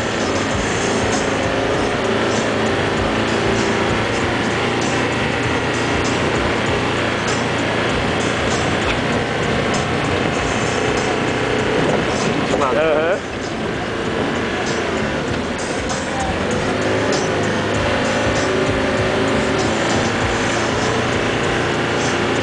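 Mitsubishi L200 pickup's engine running under load while driving over soft sand, heard from inside the cab, with jolts and rattles all the way through. A brief wavering high sound comes a little past the middle.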